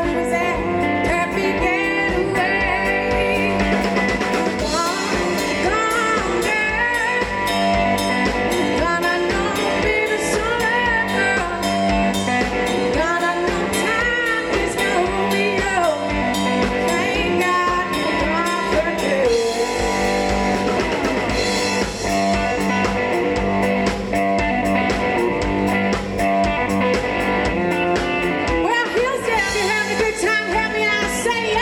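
Live blues-rock band playing: electric guitar leading over a drum kit, with a woman's singing voice.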